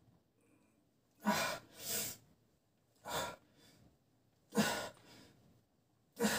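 A man's heavy, effortful breathing as he bench-presses a 40 kg barbell on sore muscles: four loud, hard breaths about a second apart, starting about a second in, the sound of straining through each repetition.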